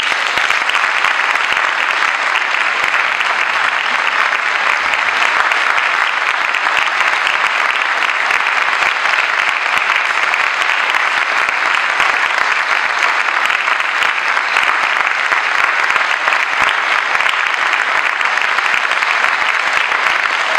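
Audience applauding, a dense and steady clapping.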